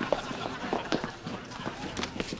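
Quick, irregular footsteps on a hard floor, several steps a second.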